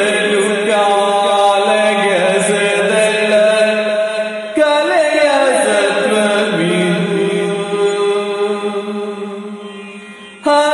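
A male singer sings in the Yakshagana bhagavathike style, holding long, gliding notes over a steady drone. One line ends and the next begins about halfway through, and the phrase fades away near the end.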